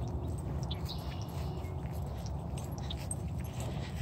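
Steady low rumble of wind and handling noise on a hand-held phone microphone during a walk on grass, with faint scattered clicks.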